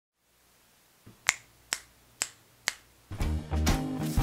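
Four finger snaps about half a second apart, then music with a steady beat starts about three seconds in.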